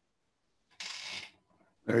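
Dead silence, broken about a second in by one short rustle lasting about half a second, then a man's voice starts near the end.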